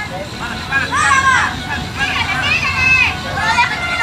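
Several high-pitched shouted calls between players on a youth football pitch, heard over a steady outdoor noise bed.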